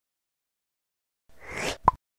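Logo-reveal sound effect: after a moment of silence, a short swelling rush of noise ends in a single sharp pop near the end.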